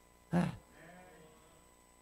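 A man's voice saying a short drawn-out 'É' into a microphone, then a pause of over a second that is nearly silent apart from a faint murmur.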